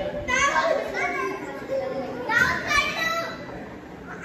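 Children's voices calling out and chattering in a gym hall, in two short bursts: one just after the start and one about two and a half seconds in.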